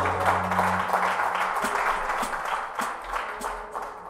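A band's last held chord dies away about a second in, and hand-clapping applause takes over with individual claps distinct, thinning and fading out near the end.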